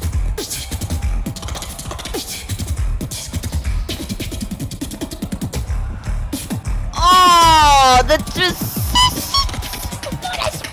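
Solo beatbox routine: rapid bass kicks and snare-like clicks, then about seven seconds in the loudest part, a held tone sliding down in pitch for about a second, followed by short high chirps.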